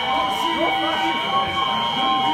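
Several steady, high-pitched alarm sirens sounding together, one held constantly and others cutting in and out, over a crowd's shouting voices.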